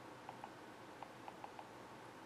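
Near silence: room tone with a few faint, irregularly spaced ticks.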